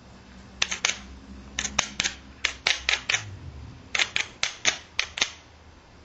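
Hammerstone brushed and tapped lightly against the edge of a stone Clovis point preform: about a dozen sharp, light clicks in small clusters of two or three. It is smoothing a pitted spot on the hammerstone's striking face into a good contact area before a strike, since hitting with a dented area can give a bad release.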